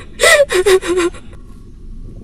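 A woman crying: four quick, loud sobs in the first second, falling in pitch.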